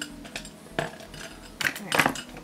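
Makeup products and containers clicking and clinking together as they are handled, a few light clicks and then a louder clatter in the second half.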